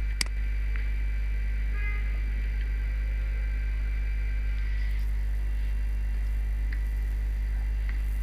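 Steady low electrical mains hum on the recording, with a single mouse click about a quarter of a second in.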